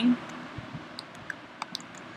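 Computer keyboard and mouse being worked: several sharp, irregular clicks while text is copied and entered into a form field.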